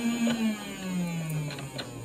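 A boy's long, drawn-out hum, held on one note and then sliding lower in pitch through the second half, with a few light clicks.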